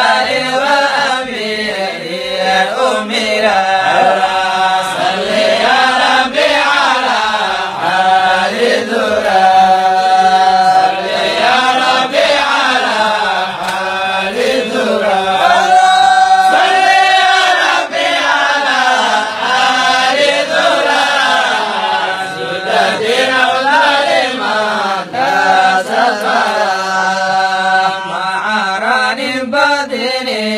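A man's solo voice chanting melodically, unaccompanied, through a handheld microphone, with long held notes that waver and bend in pitch.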